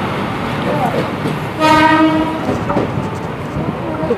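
A passenger train's horn sounds one short, steady blast about one and a half seconds in, over the running noise of the train pulling into the platform.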